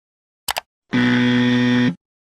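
Animation sound effects: a short click, then a flat, steady buzzer tone about a second long. It is a rejection buzzer, sounding as the clicked share icon turns red.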